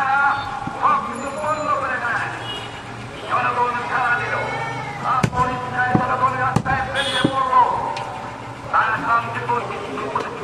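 Untranscribed voices talking throughout, with a handful of sharp knocks of a butcher's knife against a wooden chopping block as goat meat is cut, most of them between about five and seven and a half seconds in.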